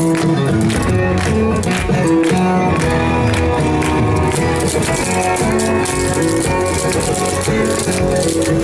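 Upbeat recorded dance music with a steady beat, joined from about halfway through by the rapid clicking taps of clogging shoes on paving stones.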